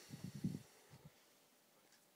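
Breath puffing onto the microphone as cigarette smoke is blown out: a quick cluster of low, muffled bumps in the first half second and one more about a second in.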